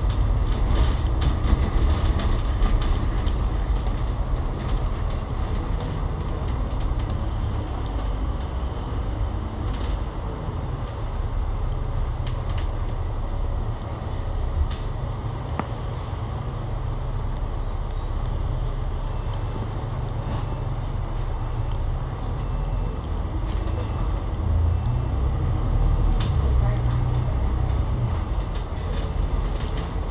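A Euro 6 Alexander Dennis Enviro500 MMC double-decker bus heard from inside the cabin while on the move: the Cummins L9 diesel engine and ZF automatic gearbox give a steady low rumble. From about two-thirds of the way in, a faint high beep repeats roughly once a second.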